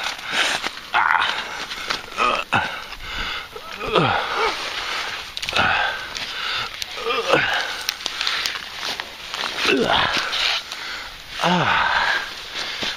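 A man's short pained cries, about six of them, each falling in pitch, as he is stung by nettles while pushing through undergrowth. Leaves and twigs rustle and crackle between the cries.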